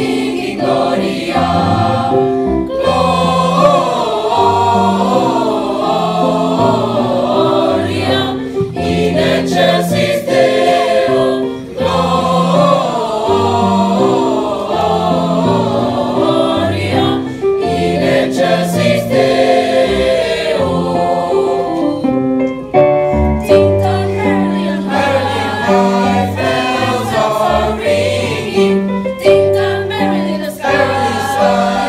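Student choir singing together, holding sustained notes that change in pitch, with a steady low line beneath the voices.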